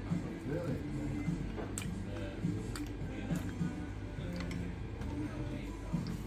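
Background music and indistinct chatter of a busy restaurant, with a few short sharp clicks.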